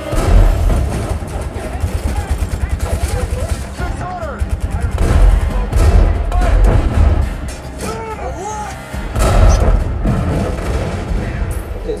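War-movie battle soundtrack played loud through a home-theater system with dual 15-inch subwoofers: rapid gunfire and heavy booms with deep bass, over music, with several big hits spread through the scene.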